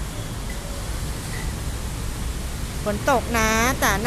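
Steady hiss of light rain and traffic on a wet street. A woman starts talking near the end.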